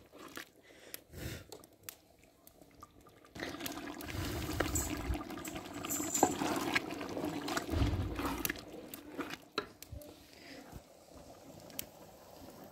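Tripe frying in ghee in a large metal pot, bubbling and sizzling while a metal ladle stirs it, with scattered clicks and knocks of the ladle against the pot. The frying grows louder after about three seconds and dies down near the end.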